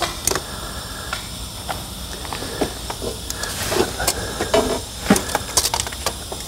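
A jack being worked to raise the front end of a UTV, heard as scattered light clicks, knocks and short scrapes with no steady rhythm.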